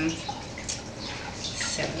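Freshly rinsed, damp mugwort leaves rustling faintly in short bursts as they are pushed by hand into a small glass jar.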